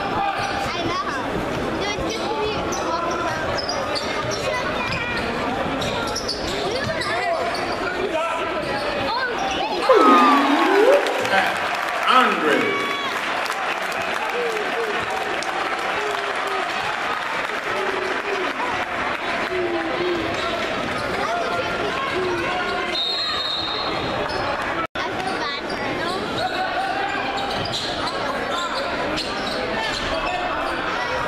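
Basketball game sound in a crowded gymnasium: a steady hubbub of crowd voices with a ball dribbling on the hardwood floor. A louder stretch of squeaks and shouts comes about ten to thirteen seconds in.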